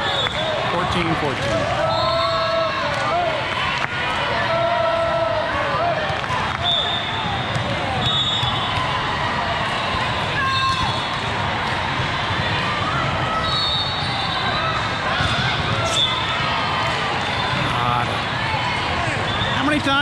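Din of a big hall full of indoor volleyball games: volleyballs thumping as they are struck and bounce on the courts, over a steady mix of players' and spectators' voices, with brief high-pitched tones now and then.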